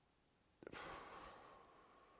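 A man sighs while stuck for an answer: a small mouth click about half a second in, then a long, soft breathy exhale that fades away.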